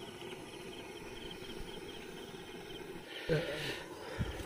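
Steady chorus of crickets and other night insects, a fast pulsing chirp. A short burst of voice and clatter comes near the end.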